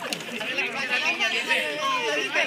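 Several people talking at once close by: overlapping chatter with no clear words.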